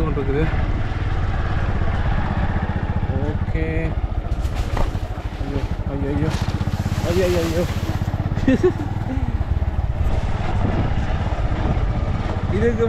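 Small motorcycle engine running steadily at low speed while being ridden along a rough track, its firing pulses heard throughout. A rushing noise rises over it for a few seconds a little past the middle.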